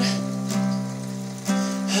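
Acoustic guitar strummed, its chord ringing on between strokes, with a light strum about half a second in and a louder one about a second and a half in.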